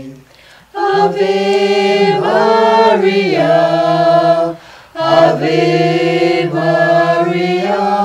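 A small mixed group of men's and a woman's voices singing a Marian hymn unaccompanied. They sing two long, held phrases with a short breath between them about halfway through.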